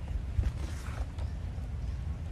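A parked motorcycle creaking and knocking lightly as monkeys clamber over its seat and handlebars. The loudest knock comes about half a second in, over a steady low rumble.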